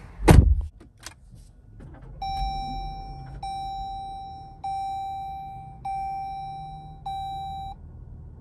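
A heavy thump and a click, then the Jeep Grand Cherokee L's dashboard warning chime: one steady tone sounding five times, a little over a second apart, each note fading out.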